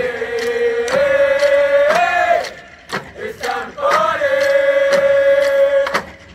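Marching band members chanting in unison, holding two long notes with a short break between them, over drums keeping a steady beat of about two strokes a second.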